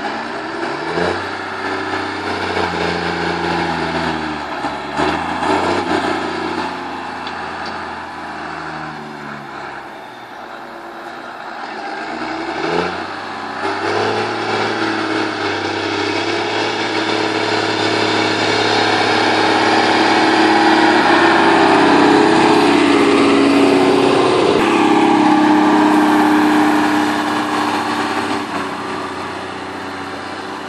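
G240 tractor's engine working under load as the tractor, fitted with a rear Garda blade, pushes chopped silage across the trench silo. Its pitch falls and rises with several rev changes in the first half, then it is held higher and grows louder toward the last third, easing off near the end.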